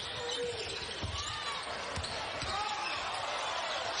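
A basketball dribbled on a hardwood court, a few low bounces, over a steady arena crowd murmur with faint distant voices.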